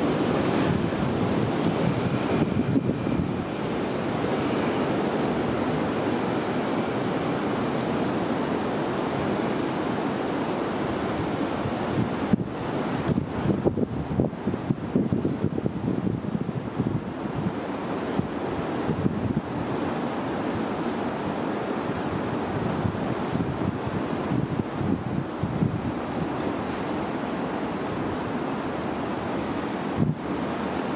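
Wind rushing through bare forest trees and buffeting the microphone, a steady roar that turns gustier and more uneven for a few seconds in the middle.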